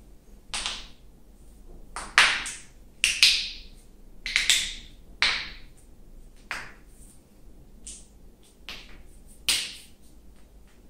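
Finger knuckles and wrist joints being cracked on purpose by pressing and bending interlaced hands: a series of about a dozen sharp pops, several in quick pairs, the loudest between two and four seconds in. This is joint popping that, in his view, releases tension in the joints.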